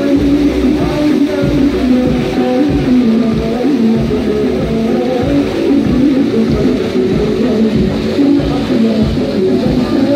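Music playing steadily, with guitar prominent.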